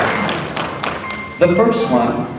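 Audience applause dying away, with a few thuds and taps, then a voice starts speaking about a second and a half in.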